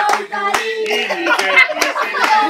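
A group of people singing together while clapping their hands along to the song, roughly two claps a second.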